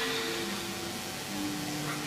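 Soft gamelan accompaniment: a few sustained ringing notes held at changing pitches, low in level.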